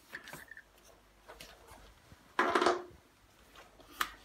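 Hard plastic parts of a Stokke Xplory stroller's handle mechanism being handled: a few light clicks, then a short louder scrape about two and a half seconds in.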